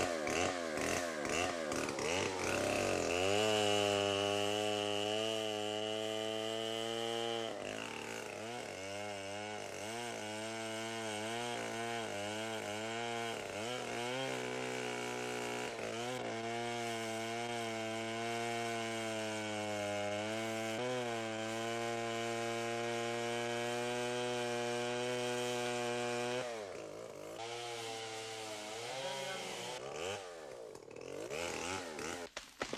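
Two-stroke chainsaw cutting into the trunk of a large tree. The engine note wavers up and down under load in places and holds steady in long stretches, and it drops back briefly near the end before rising again.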